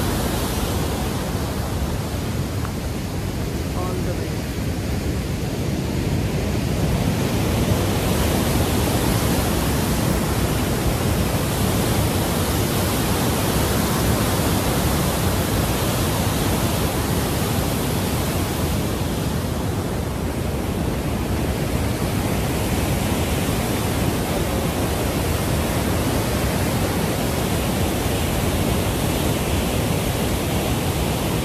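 Loud, steady rush of the Waikato River's white-water rapids at Huka Falls, an unbroken wash of water noise.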